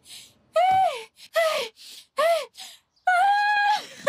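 A woman wailing in distress: three short cries that rise and fall in pitch, about one a second, then a longer held cry near the end.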